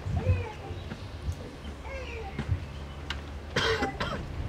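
A single cough near the end over faint distant voices and a steady low hum.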